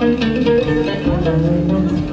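Live acoustic band music: a plucked string instrument playing a melodic line over an upright double bass.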